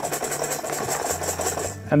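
Closed clear plastic lure box being shaken fast and evenly, upside down, in both hands; its baits are held in place by a gel-lined bottom.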